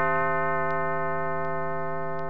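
A single held synthesizer note, fading slowly, with faint clock-like ticks about every three-quarters of a second.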